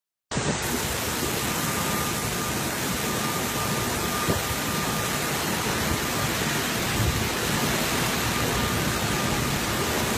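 Typhoon rain and wind, a dense steady hiss of heavy wind-driven rain.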